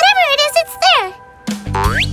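Cartoon sound effects over children's background music: short pitched vocal sounds rising and falling in the first second, then a quick upward-gliding 'boing' near the end as a cat character springs off a ledge.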